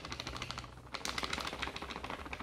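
Chapatti flour being shaken from a spoon into a plastic mixing bowl on a kitchen scale: a rapid run of soft ticks, with a short lull just before one second in.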